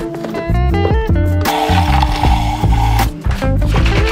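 Background music with a steady beat and melodic instrumental lines.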